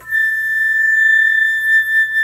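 Solo concert flute sounding a single long, high held note that starts abruptly and is sustained steadily.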